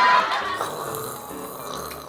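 A beep of a TV test tone over a burst of static, dying away within about half a second. Then a low, rumbling 'brrr' of a person shuddering after a strong shot of soju.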